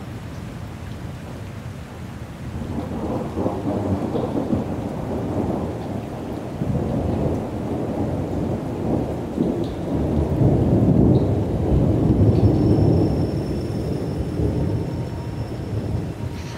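A deep, thunder-like rumble with a rough hiss on top. It swells a few seconds in, is loudest a little past the middle, then eases off.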